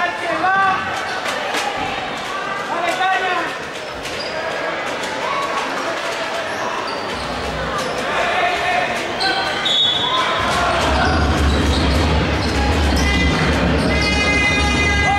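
A basketball bouncing repeatedly on a wooden court in a large, echoing hall, with players and crowd calling out. From about ten seconds in, a loud, steady horn-like drone joins and holds.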